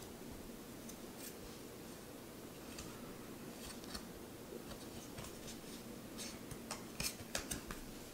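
Tarot cards being handled and slid past one another in the hands: faint rustling with small sharp card clicks, more of them about seven seconds in.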